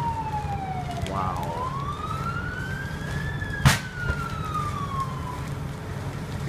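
Emergency vehicle siren wailing slowly: its pitch falls, climbs for about two seconds, then falls again. A single sharp bang about three and a half seconds in is the loudest sound, over a steady low rumble.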